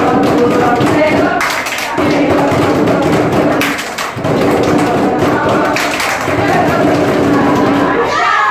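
A group singing a hand-play song over music, the held notes coming in short phrases. Claps and taps keep time with it throughout.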